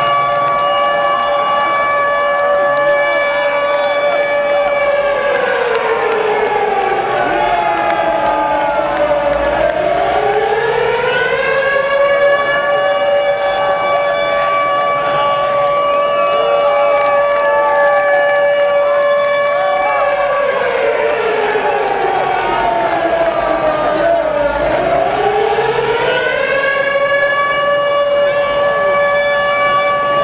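Air-raid siren played over a concert PA as the band's walk-on intro: a steady wail that sinks in pitch and climbs back twice, lowest about ten and twenty-five seconds in. Underneath, a large crowd chatters and shouts.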